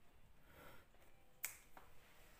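Near silence, broken by one sharp click about halfway through and a fainter click just after it.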